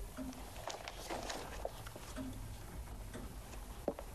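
Quiet room ambience with faint rustling and a few soft clicks, the loudest a sharp click just before the end.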